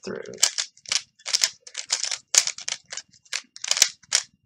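3x3 plastic puzzle cube turned quickly by hand through the Rb PLL algorithm: a fast, irregular run of sharp clicks and clacks, one with each layer turn, about five a second.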